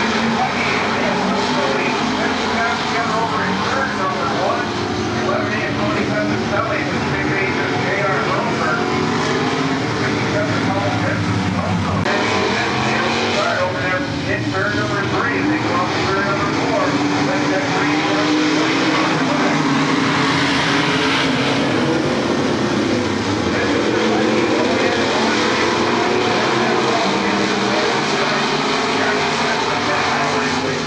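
A field of V8-powered dirt modified race cars running laps together. Their engine notes overlap and rise and fall steadily as they pass around the track.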